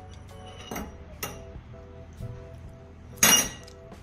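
A metal fork clinking against a ceramic plate: light taps about a second in, then one much louder ringing clink near the end. Soft background music runs underneath.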